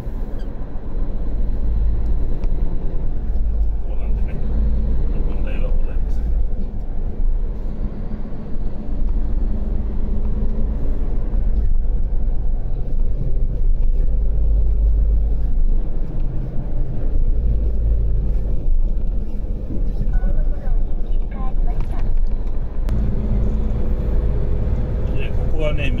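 Tractor-trailer's diesel engine running as the truck drives, with steady road noise, heard from inside the cab.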